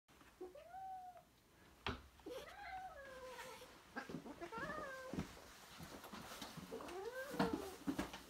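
House cats meowing four times, each call rising and then falling in pitch, with a sharp click about two seconds in.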